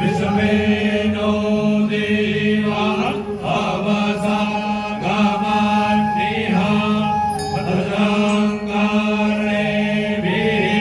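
Group of Brahmin priests chanting Vedic mantras together into microphones, in short phrases on steady held pitches.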